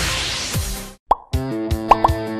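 Electronic dance music fades out under a rising hiss, then drops into a moment of silence. A quick upward-sliding pop sound effect follows, and a new upbeat advertising jingle begins with a regular beat and bright plucked notes.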